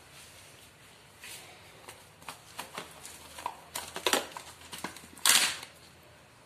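Scattered light clicks and knocks as kitchen containers and a spoon are handled, with one louder, brief scraping rustle about five seconds in.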